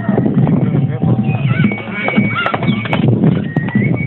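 Hoofbeats of a ridden horse coming along a dirt road, a quick run of knocks, with people's voices around it.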